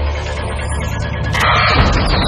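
Dramatic film score over a deep, continuous low rumble, with a louder rush of sound swelling in about one and a half seconds in.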